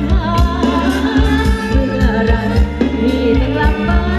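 Live band playing Thai ramwong dance music: a singer's wavering melody over a steady drum beat.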